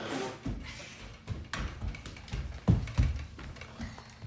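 Irregular knocks and thuds, about eight in a few seconds, the loudest pair about two-thirds of the way through: a toy blaster handled and a child shifting on a hardwood floor.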